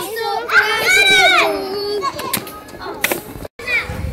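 Young girls' high voices calling out together, with one long drawn-out shout about a second in, then scattered chatter; the sound drops out completely for an instant near the end at an edit cut.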